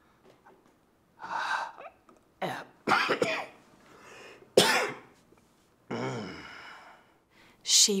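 A man coughing into his fist, about five harsh coughs spread over several seconds with short pauses between them.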